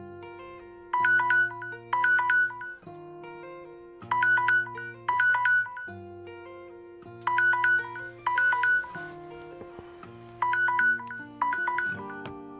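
Smartphone alarm ringing: bright electronic chimes in pairs, each pair repeating about every three seconds, stopping near the end. Soft background music with sustained notes runs underneath.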